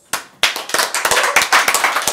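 Small audience applauding by hand: one early clap, then many hands clapping together from about half a second in, with single claps standing out.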